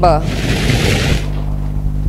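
A brief rush of hiss lasting about a second, then a steady low electrical hum.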